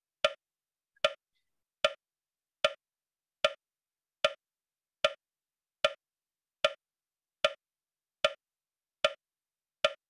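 Metronome clicking steadily at 75 beats a minute, setting the pace for kapalbhati breathing strokes.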